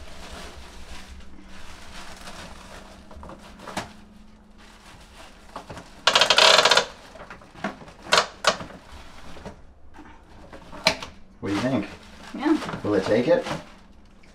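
A compostable liner bag rustling as it is fitted into a composting toilet's plastic bin, with one loud crinkle about six seconds in and a few sharp plastic clicks after it. A voice is heard briefly near the end.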